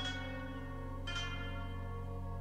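Calm instrumental background music: plucked string notes ring out over a held low drone, with two struck notes about a second apart.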